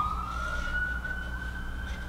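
A siren wailing: one high tone that rises slowly in pitch and then holds, over a low steady hum.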